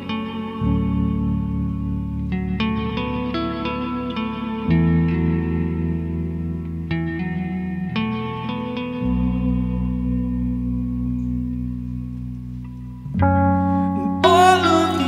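Electric guitar and keyboard playing a slow instrumental opening. Sustained low chords change about every four seconds, with single picked notes above them.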